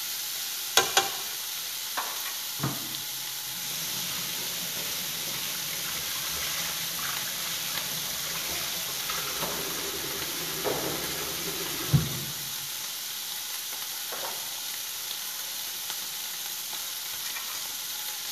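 Small shrimp sizzling steadily as they fry with sugar in a pan over a gas flame. A wooden spatula clicks and scrapes against the pan a few times in the first three seconds, and there is one louder knock about twelve seconds in.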